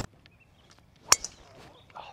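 A driver striking a golf ball off the tee: one sharp crack about a second in, with a short ring after it.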